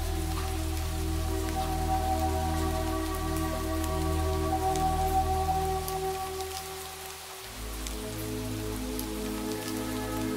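Rain falling with scattered drops, layered over slow ambient music of long held chords; the chord changes about seven and a half seconds in.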